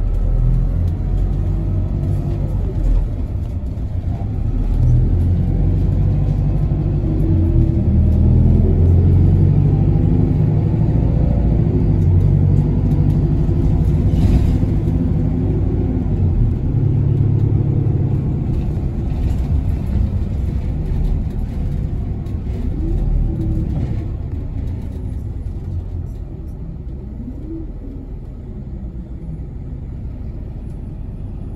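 Diesel route bus running, heard from inside the passenger cabin: engine and road noise building as the bus pulls away and picks up speed, then easing off and getting quieter over the last few seconds.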